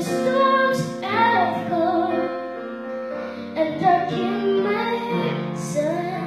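A young boy singing a slow song into a handheld microphone, holding and bending long notes, accompanied by sustained chords on a digital piano.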